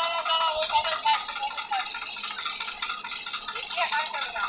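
Men's voices, then a dense rattling clatter from a tractor's diesel engine running.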